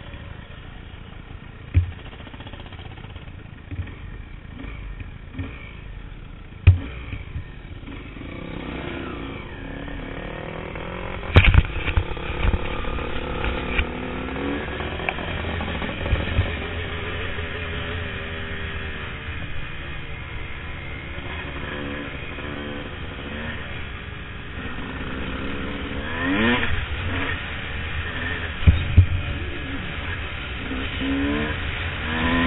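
Dirt bike engine running low at first, then revving up and down in pitch as the bike rides a rough trail, with a quick rising rev about 26 seconds in. Sharp knocks and clatter from the bike over bumps stand out several times.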